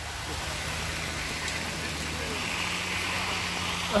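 Hailstorm: hail and rain falling steadily on the road and surroundings, with the low steady hum of an idling car engine underneath.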